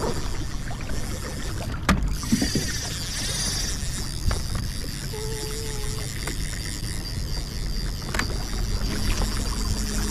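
Kayak moving under an electric trolling motor: a steady wash of water and wind noise with a thin high whine, and a single knock about two seconds in.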